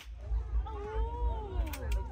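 A long drawn-out vocal cry, its pitch rising and then falling, over a steady low thumping beat, with two short clicks near the end.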